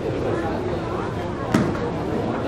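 A single sharp slap about one and a half seconds in: an aikido partner's breakfall landing on the mat at the end of a throw, over steady voices in the hall.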